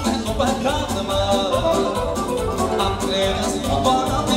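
Wedding band playing fast dance music for a circle dance: a steady, driving beat under a bending instrumental melody line.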